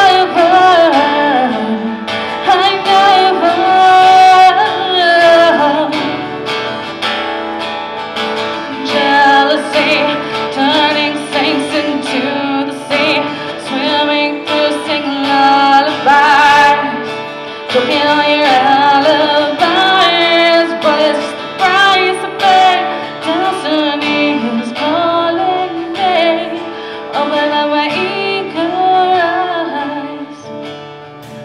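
A woman singing with a strummed acoustic guitar accompaniment.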